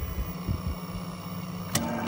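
National NV-3082 portable open-reel video recorder running in playback with a steady low mechanical hum from its tape transport. A single sharp click comes about three-quarters of the way through as the machine is switched between pause and play.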